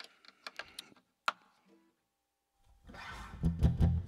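A few light clicks, then an acoustic guitar strummed from about two and a half seconds in, loudest near the end.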